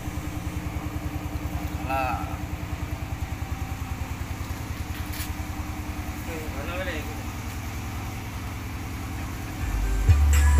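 An engine idling steadily, a fast, even low pulse with no music over it, with a couple of brief faint voices.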